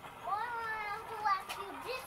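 A young child's high-pitched voice: one drawn-out call of about a second, then a shorter sound near the end, with no words.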